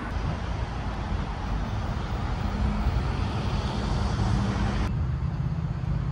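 Road traffic noise, a steady rumble and hiss from passing cars that swells somewhat in the middle. About five seconds in it changes abruptly to a duller, quieter hum.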